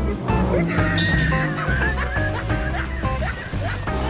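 Background music with a steady, pulsing bass beat and a busy, bouncy tune on top.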